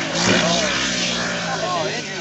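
Off-road vehicle engine running nearby with a steady hum, its pitch briefly rising and falling twice.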